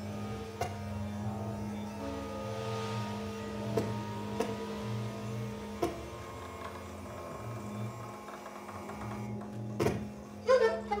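Free-improvised music: a double bass played with extended techniques, worked with a bow and a thin wooden stick on its strings. Under it runs a steady low drone with a pulsing throb beneath, and a handful of sharp clicks falls through the passage.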